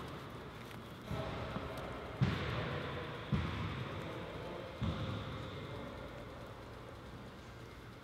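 Shoelaces being pulled and tied on a sneaker: a faint rustling, with four soft, echoing thumps in the first five seconds.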